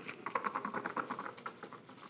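A quick patter of light clicks and rustling from raffle tickets being stirred and drawn by hand, thinning out and fading near the end.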